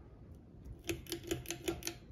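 A quick run of about eight light clicks, each with a short ringing tone, about a second in, over the faint running of a Hunter Passport II ceiling fan.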